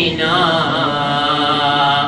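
A man's solo voice chanting an Urdu noha (mourning lament) into a microphone, holding one long, steady note on "na" that breaks off at the end.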